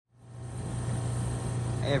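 2019 Oxbox heat pump outdoor unit running in heat mode, a steady low hum that fades in from silence over the first half second. Its outdoor coil is thickly frosted and it is not going into its defrost cycle.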